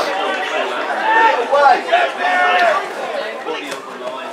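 Several spectators' voices chattering and calling out, no words clear.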